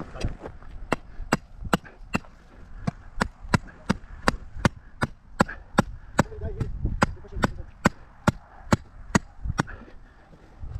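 Husky sledgehammer striking a metal stake pin being driven into hard ground. A steady run of sharp, ringing strikes, about two and a half a second, from about a second in until near the end.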